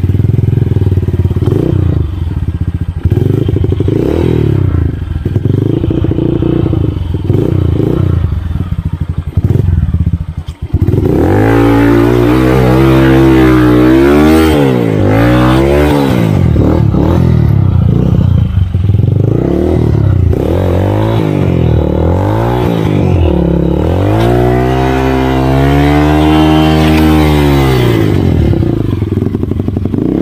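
Dirt bike engine running through a mud crossing, steady at first. From about eleven seconds in it is revved up and down again and again, its pitch climbing and falling in long swells.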